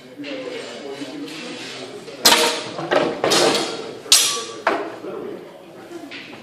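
Sword-and-shield sparring: a quick flurry of about five sharp clacks as swords strike shields and each other, starting about two seconds in and over in under three seconds. One blow leaves a brief ring.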